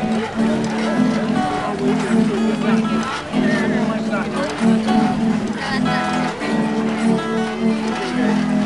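Acoustic guitar strummed in time with the low, held notes of organ pipes blown by the bellows of a giant teeter-totter. The pipe notes sound for about a second at a time with short breaks between them.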